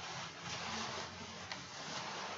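Faint rustling of hands handling small parts at a table, with one light click about one and a half seconds in.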